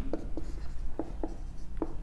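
Marker writing on a whiteboard: about five short, separate strokes as letters and an arrow are written.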